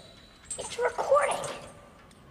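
A man's wordless moaning cries: a few short wavering wails starting about half a second in and dying away by the middle.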